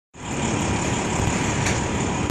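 Peterbilt semi truck's diesel engine idling steadily. It cuts in just after the start.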